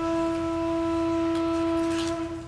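Trumpet holding one long, steady note.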